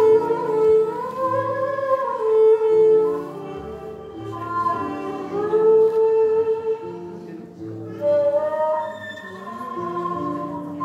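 Live Turkish folk music: a string ensemble of bağlamas, oud and bowed kemençe plays a slow melody, with long held notes that slide up and down over a repeating low line.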